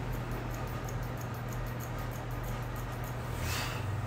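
Grooming shears snipping the hair on a dog's muzzle: quick, light, repeated snips over a steady low room hum, with a brief rustle of hair about three and a half seconds in.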